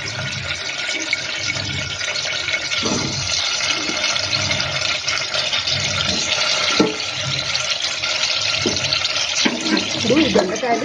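Ivy gourds sizzling in hot oil in an aluminium pressure cooker on the stove, a steady hiss, with a few soft knocks as they are handled in the pot.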